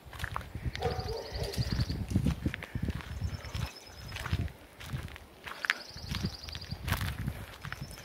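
Footsteps crunching on a gravel road at a steady walking pace, about two steps a second.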